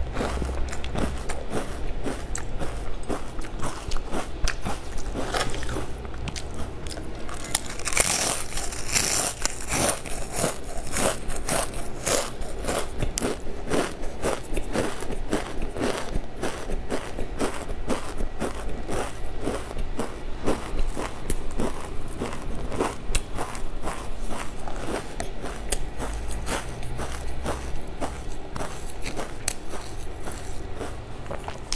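Close-miked chewing and crunching of crisp snack food: a steady run of crunches, several a second, loudest about eight to ten seconds in.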